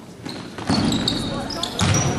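Basketball game sounds in a large gym: a ball thump about two seconds in, short high sneaker squeaks on the hardwood floor, and voices from players and spectators.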